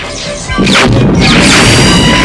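A loud crash sound effect bursts in about half a second in and runs on through the rest, laid over dramatic background music.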